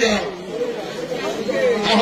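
Speech only: people talking, with crowd chatter.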